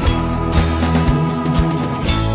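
Instrumental rock passage with electric guitar over sustained low notes and a steady drum beat.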